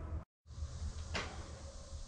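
A recording cut: a moment of dead silence, then quiet shop room noise with one sharp click just over a second in.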